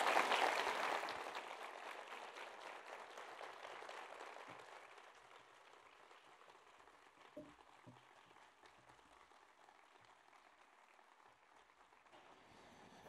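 Audience applause, loudest at the start and dying away over about six seconds, then only faint room sound.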